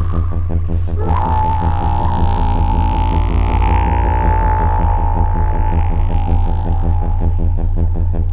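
Electronic drone from a sample played on a Buchla modular synthesizer and run through a Synton Fenix 2 phaser that is modulated and in feedback mode: a fast-pulsing low throb with a dense stack of overtones and a slow sweep moving up and down through the upper range. A steady high tone enters about a second in.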